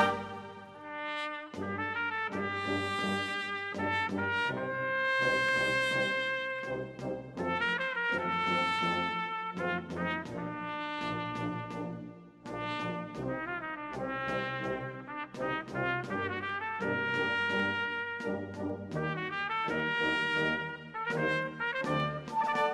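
A Spanish wind band (banda de música) playing a Holy Week processional march: a softer, brass-led passage of sustained melodic phrases with trumpets and trombones. It opens as a loud full-band passage dies away in the first second.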